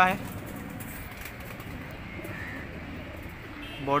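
Domestic pigeons cooing softly, a few faint low coos in the pause between words.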